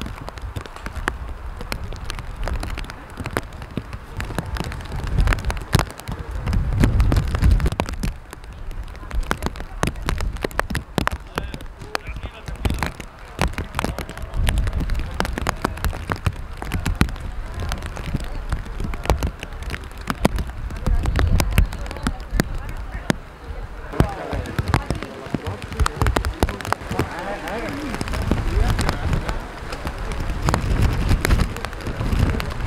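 Rain with gusts of wind rumbling on the microphone: a dense patter of sharp ticks, and indistinct voices near the end.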